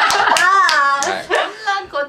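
A group laughing loudly, with a few sharp hand claps in the first half second and a high-pitched laugh soon after.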